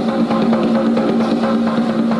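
A pair of conga drums played with bare hands: a fast, continuous run of strokes with the drumheads ringing underneath.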